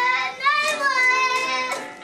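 A young boy singing and shouting loudly in a high child's voice, holding long notes in a mock rock performance.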